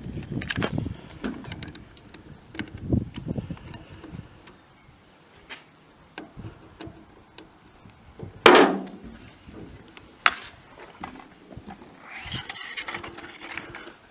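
Scattered metallic clicks and knocks of a Desert Tactical Arms SRS bullpup rifle being worked on as its barrel is loosened and pulled out of the receiver. The loudest knock comes about eight and a half seconds in, with another a couple of seconds later.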